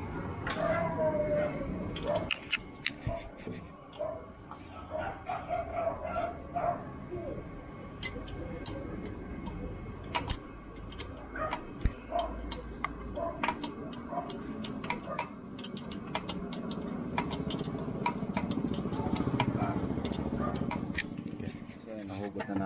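Allen wrench clicking and tapping on metal as the screws holding a jammed automatic gate motor are worked loose. The clicks come irregularly, thickest over the second half, over a low steady rumble.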